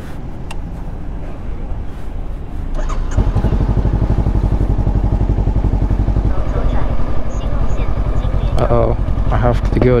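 Honda CB500X's parallel-twin engine running at low speed. It gets louder and more throbbing about three seconds in, as the bike gets under way.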